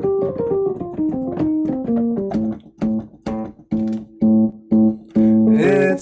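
Electronic keyboard playing an instrumental passage between sung lines of a goodbye song. It starts with a descending run of single notes, then plays short repeated chords over the same bass note, about two a second.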